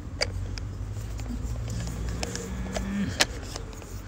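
A few sharp plastic clicks and knocks as a Caleffi DirtMag Mini magnetic filter's mesh cartridge and body are fitted back together, the loudest a little after three seconds in. Under them runs a low steady hum, with a brief steady tone that falls away near the loudest click.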